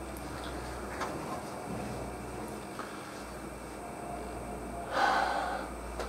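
Quiet room tone with a faint tap about a second in, then a man drawing a breath for about a second near the end.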